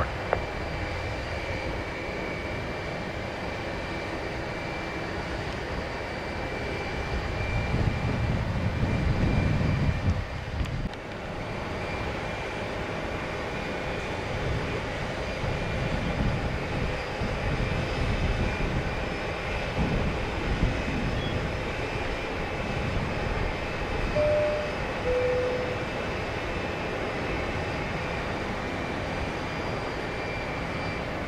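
Distant jet airliner engines running with a steady faint whine, while gusty wind rumbles on the microphone in irregular swells, the strongest about 8 to 10 seconds in.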